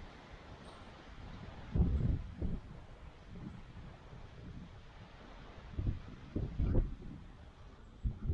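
Wind buffeting the microphone in a few short, low, muffled gusts about two seconds in and again near the end, over a faint steady background.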